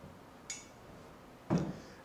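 A steel trailer ball set down on a tabletop with a single sharp click about half a second in, then a soft thump near the end.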